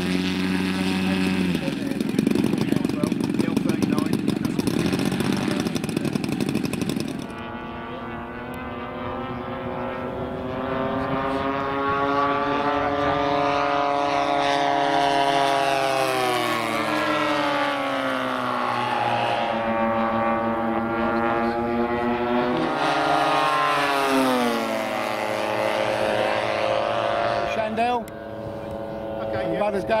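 Engines of large-scale radio-controlled model warplanes: for the first seven seconds engines running on the ground close by, then the engines of models in flight, their pitch rising and falling over and over as they make passes.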